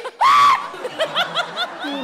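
A person laughing: one loud burst at the start, then a quick run of short chuckles.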